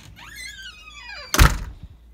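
A door is pushed shut and closes with a loud thunk about one and a half seconds in. Just before it comes a falling squeal.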